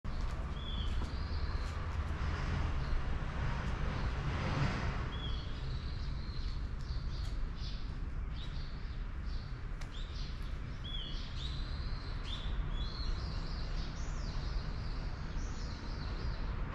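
Small birds chirping repeatedly in short high notes, more often in the second half, over a steady low rumble.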